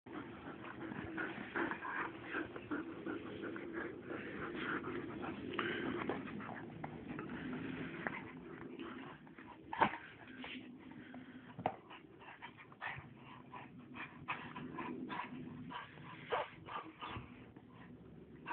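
Two dogs, an Akita and a German Shepherd, vocalizing at play, the sound dense for the first half and then broken up by sharp knocks, the loudest about ten seconds in.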